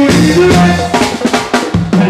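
Live reggae band playing, with the drum kit to the fore and a fill of quick drum hits in the second half over the steady bass line.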